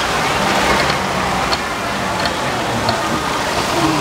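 Water from hand-pumped children's fire hoses spraying and splashing against a mock building, a steady hiss of water over background chatter.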